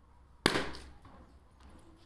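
A latex balloon bursting once, popped with a pin, about half a second in: one sharp bang that dies away quickly.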